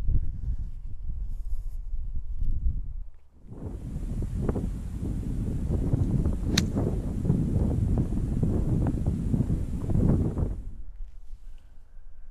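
Wind buffeting the microphone, with one sharp crack about halfway through as an iron strikes a golf ball out of heavy rough.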